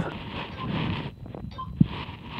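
A man breathing hard from the strain of the last crunches of an ab set. A breathy rush in the first second, then softer breathing, with a single small click near the end.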